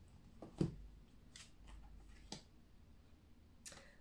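Tarot cards being handled and drawn from a deck: a few light snaps and flicks of card stock, the sharpest about half a second in, and another near the end.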